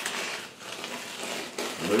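Adhesive contact paper mask being peeled off an oil-painted canvas, a continuous rustling, crinkling tear of the plastic sheet coming away from the surface.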